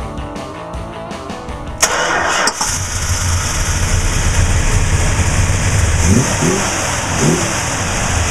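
Background music at first; then, about two seconds in, a 1966 Dodge Coronet's rebuilt 440 V8 is started with a short burst of cranking and catches into a steady, deep idle. Near the end it is revved briefly a couple of times, the pitch rising and falling each time.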